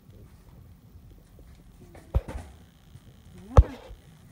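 Low handling rustle, then two sharp knocks about a second and a half apart, the second louder, with a brief voiced sound around the second knock.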